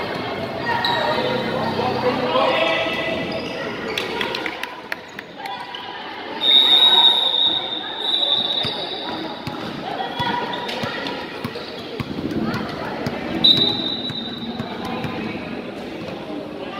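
A basketball bouncing on an indoor court amid players' and spectators' voices, with a long, high, steady whistle blast about six seconds in and a shorter one near the end.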